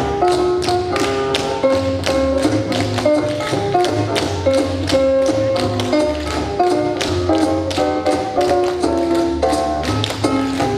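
Tap shoes of a group of dancers striking the stage floor in unison, a quick rhythmic run of sharp taps in time with music that has a melody and bass line.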